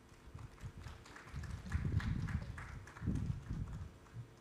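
Footsteps on a stage floor walking to a lectern: an irregular run of dull thumps with light taps, heaviest in the middle and again about three seconds in.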